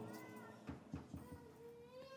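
Faint drawn-out pitched cries in the background: a short one near the start and a longer one rising slightly from about halfway through, with a few soft clicks between.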